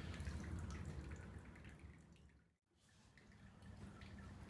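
Faint dripping and trickling of water from a hose into a bucket of water, a small flow kept up by the still-running pump with the engine off. It fades away about two seconds in, followed by a moment of dead silence and then faint room tone.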